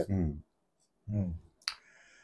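A man's speech trailing off, a short voiced sound about a second in, then one sharp click with a faint hiss after it.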